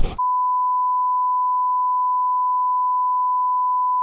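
A brief thud, then a single steady electronic beep tone, one pure pitch held unchanged for about four seconds and cut off abruptly.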